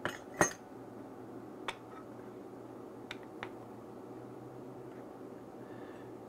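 Metal hole saw parts clinking as they are handled and set down on a workbench: two sharp clinks right at the start, then a few light ticks, over a steady low hum.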